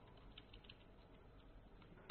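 Faint computer keyboard keystrokes: a few scattered soft key clicks while a terminal command is edited.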